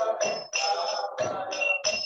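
Kirtan: a devotional chant sung into a microphone with instrumental accompaniment, and small hand cymbals ringing high and bright in a steady rhythm over the voice.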